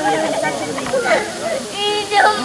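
People talking nearby over a steady hiss from red and blue ground flares burning.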